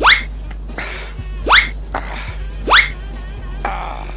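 A comedic rising whistle-like sound effect, heard three times about a second and a half apart, each a quick upward sweep, with short rushing noises between them over a steady music bed.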